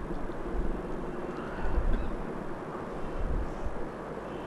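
Low rumbling background noise with no speech, swelling briefly a little under two seconds in.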